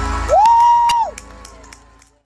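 Theatre audience cheering as a song's music dies away, with one loud 'woo' from a nearby audience member that rises, holds for about half a second and falls, and a few scattered claps; the noise fades away in the second half.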